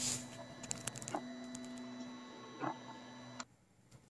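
Steady electrical hum made of several held tones, with a few light clicks and taps in the first second and a half, cutting off suddenly about three and a half seconds in.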